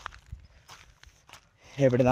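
Footsteps on dry grass, a few soft, irregular steps, followed near the end by a man's voice.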